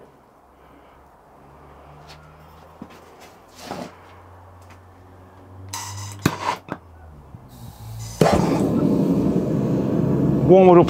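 A handheld gas torch hisses and clicks as it is lit, then about eight seconds in the propane melting furnace's burner catches with a sudden, loud, steady rush of gas flame that carries on, the furnace starting to heat a crucible of bronze.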